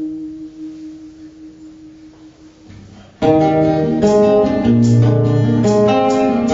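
Amplified acoustic guitar. A held chord rings and fades away over about three seconds, then a little after three seconds in the playing starts again suddenly and loudly, with plucked notes over low bass notes.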